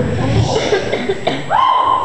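Beatboxing into a microphone through a hall PA: choppy percussive mouth sounds, then a sliding vocal note that rises and holds near the end.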